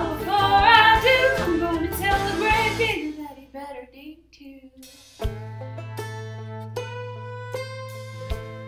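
A woman singing over a country backing track. About three seconds in, the voice and band drop away almost to nothing; then, just past five seconds, an instrumental passage starts, with picked string notes over a held low note.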